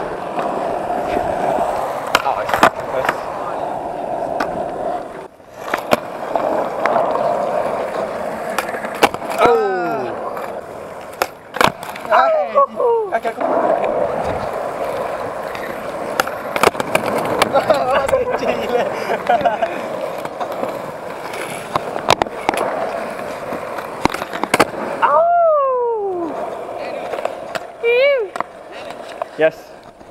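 Skateboard wheels rolling on concrete with a steady hum, broken again and again by sharp clacks of the board snapping and landing on tricks.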